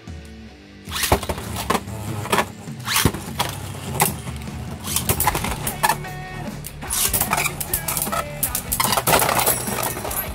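Three Beyblade Burst spinning tops are launched into a plastic stadium about a second in, then spin and clash against each other and the stadium wall with many sharp clicks and knocks, over background music.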